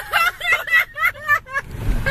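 A woman laughing hard in a rapid run of high-pitched bursts, about five a second, over the low rumble of a car's cabin on the move.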